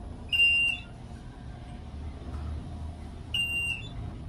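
Two short, high electronic beeps from an elevator car, one just after the start and one near the end, over the low steady rumble of the traction elevator car travelling upward.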